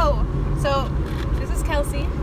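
Car cabin noise while driving: a steady low road-and-engine rumble.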